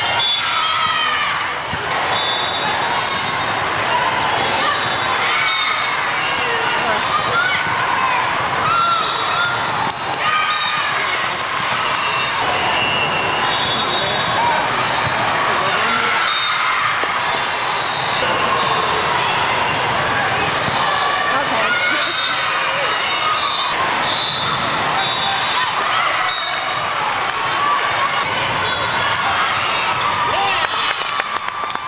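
Indoor volleyball play in a large hall: a steady din of many players and spectators talking and calling out, with volleyballs being struck and bouncing on the court. Short high-pitched squeaks come and go throughout.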